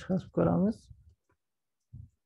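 A man's voice speaking briefly, then a few faint keyboard clicks as a command is typed.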